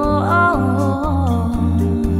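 An a cappella group singing a wordless, hummed passage: a held low sung bass line under a lead voice that slides between notes, with vocal percussion ticking in a steady beat.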